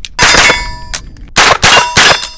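Century Arms AP5 9mm semi-automatic MP5 clone firing: one shot, then after about a second three more in quick succession. Each shot leaves a metallic ringing that fades slowly.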